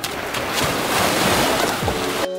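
Small waves washing onto a sandy shore, with wind buffeting the microphone.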